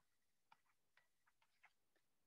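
Near silence, with a few very faint, irregular ticks from a stylus writing on a tablet screen.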